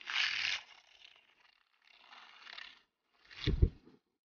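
Battery-powered Aerolatte frother whisking a thin coffee-and-sugar mixture in a glass bowl, run in short spells rather than steadily. Near the end there is a sharp knock, the loudest moment.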